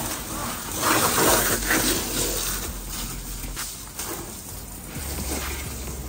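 Water spraying from a garden hose onto a car's body, a noisy hiss of spray and splashing that swells and fades as the jet moves.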